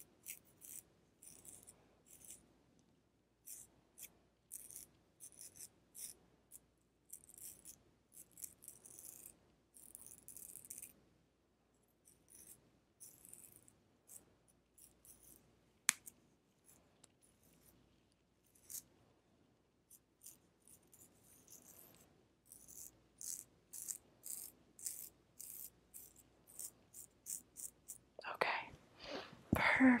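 Scissors snipping through locks of hair held right against a lavalier microphone, in short runs of snips, with one sharp click about sixteen seconds in.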